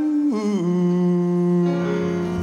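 Live séga band music: a singer holds a note, slides down about half a second in, and then holds a long, steady lower note over the band.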